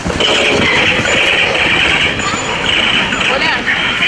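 Live sound of an outdoor laser tag game as players rush out from cover: a loud, dense commotion with a steady high-pitched noise over it and faint voices.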